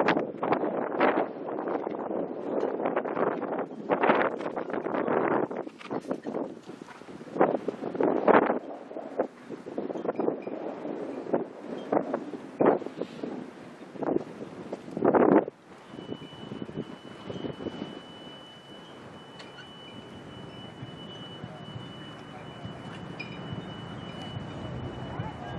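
Wind buffeting the microphone in loud, irregular gusts, easing after about 16 seconds to a quieter hiss with a faint steady high-pitched tone.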